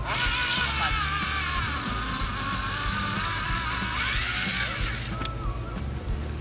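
Electric ice auger motor whining as it bores through lake ice, its pitch wavering with the load. The whine rises near the end and stops about five seconds in. Background music plays underneath.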